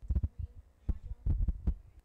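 An irregular run of dull, low thumps and knocks, some with a sharp click on top. They start suddenly and fall in two clusters over about a second and a half, then stop abruptly.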